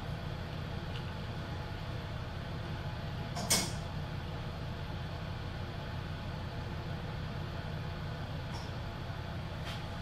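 Steady low room hum from the lab's ventilation, with one brief sharp click about three and a half seconds in.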